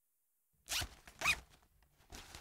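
Suitcase zipper pulled in two quick rasping strokes about half a second apart, followed by softer rustling.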